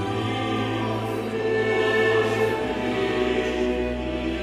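Choir and Baroque orchestra performing a French Baroque grand motet, holding sustained chords. The bass moves to a lower note about two and a half seconds in.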